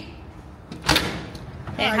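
A glass-panelled entrance door shutting with one solid thud about a second in. A woman's voice starts near the end.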